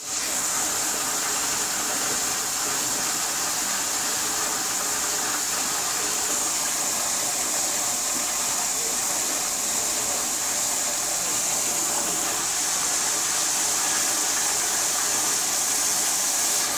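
Commercial flushometer toilet running without stopping: a steady, unbroken rush and hiss of water that never shuts off.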